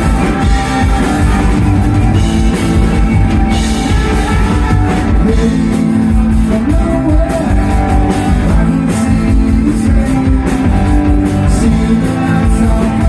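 Live rock band playing loudly: electric guitars, acoustic guitar, bass guitar and a drum kit, with a steady driving beat.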